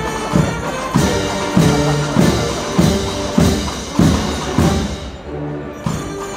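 A Semana Santa band of brass, woodwind and drums plays a slow processional march. There is a steady drum beat about every half-second, which drops out briefly near the end.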